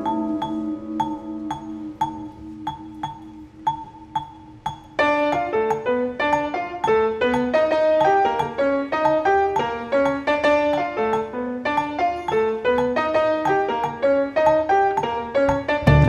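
Vibraphone and piano playing a soft jazz opening: a held low chord with a single high note struck about twice a second, then from about five seconds in a flowing, busy melodic line of mallet notes over the chords.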